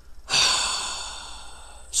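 A man's long exhale or sigh close to the microphone: a breathy rush that starts suddenly and fades over about a second and a half.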